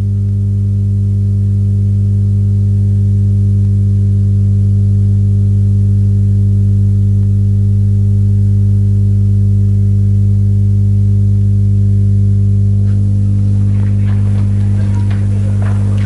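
Loud, steady electrical mains hum: a low buzz of several steady tones, strongest at the bottom, that does not change. A few faint noises come in over it near the end.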